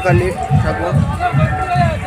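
A song played loud over a festival loudspeaker sound system: a vocal line over a steady bass beat of about three beats a second.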